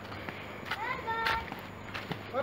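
Footsteps on a dry-leaf-strewn dirt path, with brief snatches of nearby voices.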